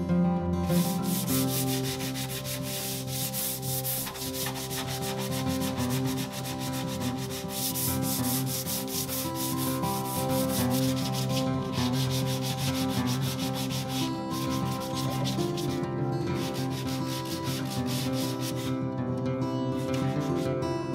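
Hand sanding the old finish on a wooden side table top with a handheld sanding sponge: quick back-and-forth strokes with a few brief pauses.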